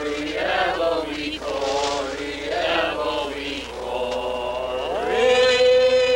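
Voices chanting in sliding, wavering pitches. Near the end a voice glides up and holds one long steady note.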